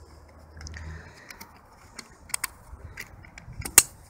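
Hands handling the folded solar panel's fabric straps and plastic fittings: soft scraping with a few light clicks, two close together partway through and a sharper click near the end.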